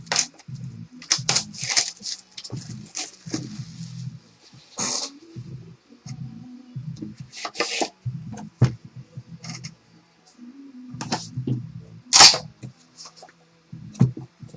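Plastic shrink wrap being torn and crinkled off a cardboard trading-card box in irregular bursts of crackling, with the box being handled.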